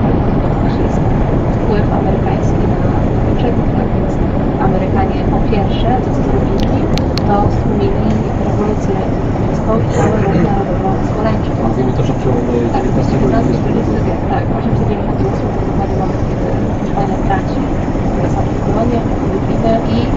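Steady engine and road noise inside a lorry cab cruising at about 43 mph, with radio talk faintly underneath.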